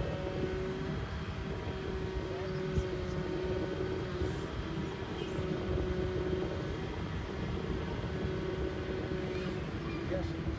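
Distant seaplane's propeller engine droning steadily on its takeoff run across the water, with wind rumble on the microphone.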